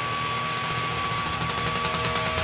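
Guitar amp feedback held as one steady high ringing tone over the low hum of the amps, with fast, light cymbal taps from the drum kit that grow louder near the end, in the break at the close of a live heavy metal song.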